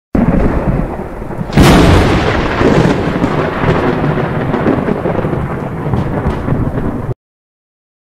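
Thunder sound effect: a loud rumble that starts abruptly, a sharp crack about one and a half seconds in, then continued rumbling that cuts off suddenly about a second before the end.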